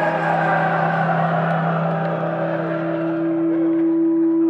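Live folk-rock band playing: acoustic guitar, mandolin and lap steel guitar, with a long steady low note held and a higher steady note joining about halfway through.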